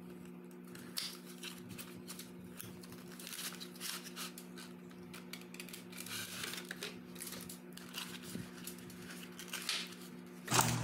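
A cardboard perfume carton being opened by hand: soft scrapes, taps and rustles of paperboard as the end flap is worked open and the inner tray is slid out to free the glass bottle.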